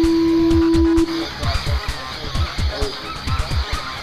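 A single loud, steady electronic beep, about a second and a half long, that cuts off about a second in. Music with a steady beat plays under it.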